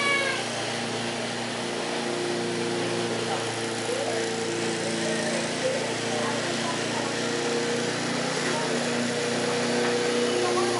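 A Briggs & Stratton-engined walk-behind lawn mower running steadily at an even pitch while mowing, with a brief high, wavering call at the very start.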